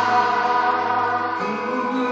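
Live church worship music: a gospel hymn sung by several voices together over sustained keyboard chords, with the chord changing about one and a half seconds in.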